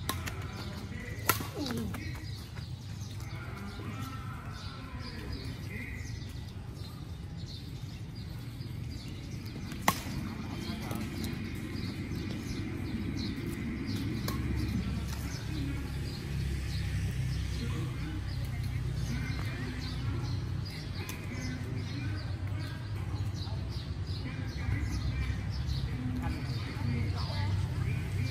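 Badminton rackets striking a shuttlecock during a rally: sharp, short pops, the two loudest about a second in and about ten seconds in, with fainter hits scattered between, over a steady low rumble and distant talk.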